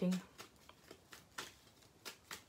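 A deck of playing cards being shuffled in the hands, giving a handful of short, soft card snaps at uneven spacing, the loudest about halfway through.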